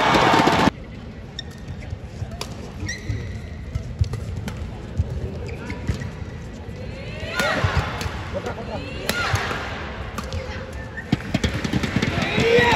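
Badminton rally in an indoor arena: a series of sharp smacks of rackets hitting the shuttlecock and players' footwork on the court, over arena crowd voices. A loud burst of crowd noise at the start cuts off suddenly under a second in.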